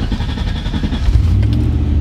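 Turbocharged LS V8 in a Volvo running just after starting, a steady low rumble heard from inside the cabin, growing a little louder about a second in.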